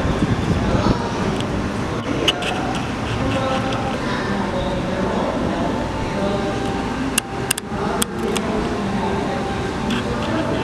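Indistinct chatter of people talking nearby over a steady background din, with a few sharp clicks about seven to eight seconds in.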